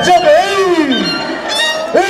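Violin music for an Andean scissors dance, with two long sounds sliding down in pitch: one over about the first second, another starting near the end.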